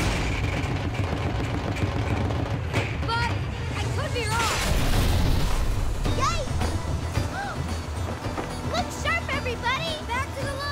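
Cartoon sound effects of a giant factory machine starting up and running: a loud, steady mechanical rumble with a noisy surge about four to five seconds in. Over it come many short swooping, rising-then-falling pitched sounds as socks fly out, with music underneath.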